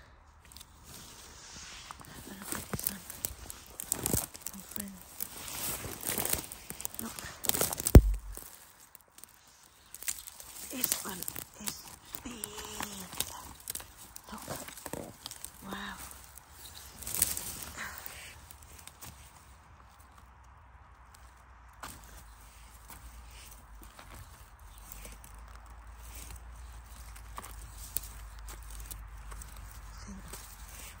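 Dry pine-needle litter rustling and crackling while a bolete mushroom is handled and cut with a small folding knife, with a sharp knock about eight seconds in.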